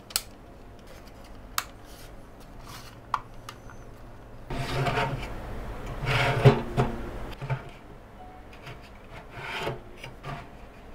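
Plastic drive trays, each holding a hard drive, sliding into the bays of a Ugreen DXP4800 Plus NAS: a rubbing scrape as a sled slides along its guides, with a few sharp clicks, the loudest about six and a half seconds in as a tray seats. Another shorter scrape follows near the end.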